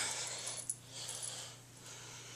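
Cloth rustling as a hand moves over sweatpants, with a couple of small clicks.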